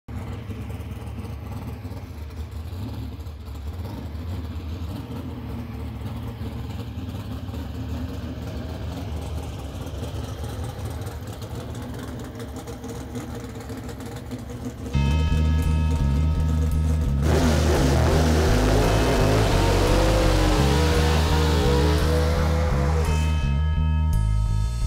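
A low, steady engine rumble, then background music with a steady beat starting about fifteen seconds in. A couple of seconds later a Pro Stock drag car's engine runs loud over the music, its pitch rising and falling as it revs during a burnout.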